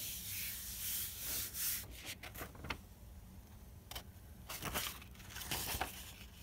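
A hand rubbing a sheet of paper down onto a painted gel printing plate makes a dry, hissing rub that fades out about two seconds in. Scattered crackles and ticks follow as the paper is peeled off the tacky plate.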